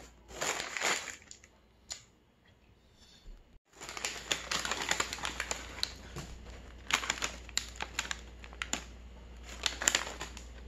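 Paper crinkling and rustling as a fast-food paper bag is handled and opened, dense and crackly with sharp little snaps, after a shorter burst of wrapper crinkling in the first second.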